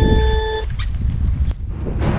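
Electronic race-start 'go' beep, one steady tone that cuts off about two-thirds of a second in, marking the end of the countdown. Wind rumbles on the microphone throughout.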